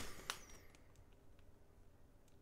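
A faint crinkle of a crisp bag in the first half second, then near silence: room tone with a few faint ticks.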